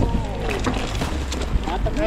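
Mountain bike rolling over a dirt trail: a steady low rumble from the tyres with frequent short knocks and rattles from the bike over bumps, and a voice calling out briefly near the start.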